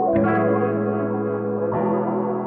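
Melodic trap loop from a sample pack: sustained layered chords over a held low note, the chord changing just after the start and again near the end.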